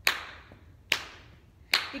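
Hand claps: three sharp, evenly spaced claps a little under a second apart, each with a short room echo, keeping a steady backbeat on beats two and four.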